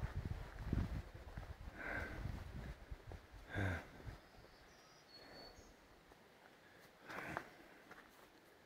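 Quiet outdoor ambience with low rumbling noise on the microphone in the first three seconds. Short breathy sniffs from the person filming come about two seconds in, near four seconds and near the end.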